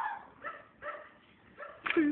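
A dog barking in a string of about five short, sharp barks.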